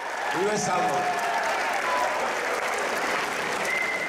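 A crowd of spectators and a seated team applauding steadily, with a few voices calling out over the clapping.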